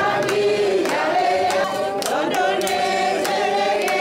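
A group of women singing together unaccompanied, with scattered hand claps.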